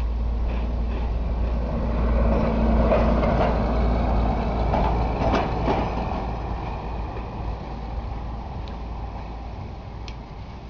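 A person chewing a mouthful of crunchy Boo Berry cereal with marshmallows, with a couple of spoon clicks against the bowl about five seconds in, over a steady low rumble.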